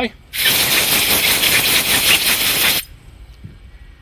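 Compressed air hissing from a blow gun for about two and a half seconds, then cutting off: blowing a spray gun's check valve and screen dry after flushing them with gun cleaner.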